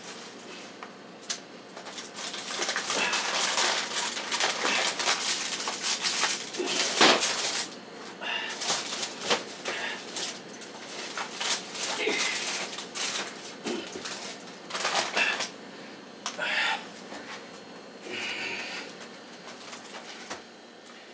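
Household objects being handled and moved: a run of irregular knocks, clinks and rustles.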